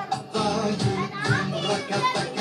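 Background music with children's voices chattering over it.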